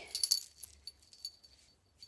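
Chunky gold-tone link chain necklace with coin charms jangling and clinking as it is handled in the hand, the clinks bunched in the first second and then dying away to a few faint ticks.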